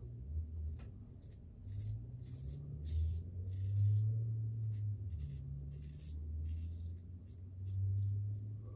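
A Vikings Blade Chieftain double-edge safety razor scraping through stubble on the upper lip in about a dozen short strokes, shaving against the grain. A low rumble runs underneath.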